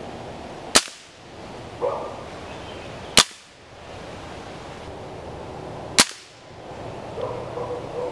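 Diana Mauser K98 .22 underlever spring-piston air rifle fired three times: three sharp cracks about two and a half seconds apart.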